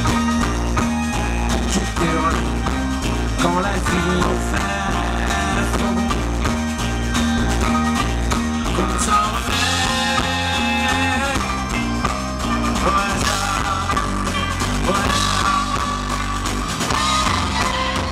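Live folk-rock band playing through a PA: a steady bass and drum pulse under accordion, violin, clarinet, banjo and electric guitar, with a held melody line coming in about halfway through.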